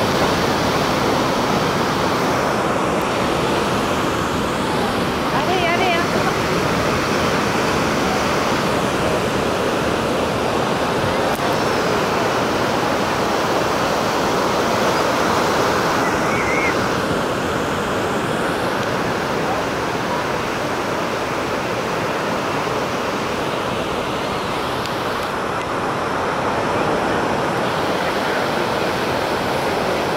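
Ocean surf: waves breaking and washing in, a steady rush that carries on without a break.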